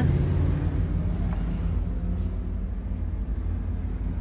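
A 2001 Mercedes ML320's six-cylinder engine idling: a steady, low rumble with no change in speed.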